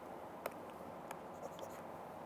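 Faint taps of a stylus on a pen tablet while writing and erasing: three or four light clicks spaced about half a second apart, over a low steady hiss.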